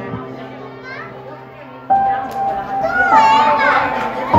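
Young children's voices and chatter over soft background music with long held notes; a new sustained note comes in about two seconds in, and a child's high voice rises and falls near the end.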